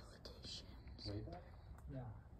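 People talking quietly in low, hushed voices.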